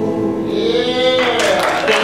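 The last held sung note of a song dies away, then audience applause and cheering break out about a second and a half in.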